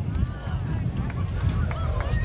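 Wind buffeting a camcorder microphone with a steady low rumble, while distant voices shout across the field in short rising and falling calls.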